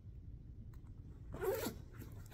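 Jacket zipper pulled up in one short rasp about a second and a half in.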